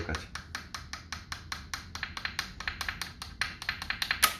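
Rapid, even, light hammer taps on steel, about seven a second, driving the lower timing sprocket onto the crankshaft nose of a Nissan VQ35DE V6 on an engine stand. The taps are kept gentle so the tight-fitting sprocket goes on without scratching.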